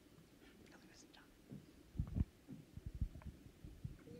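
Faint whispering and stirring from a seated audience, with a few soft low thumps in the second half.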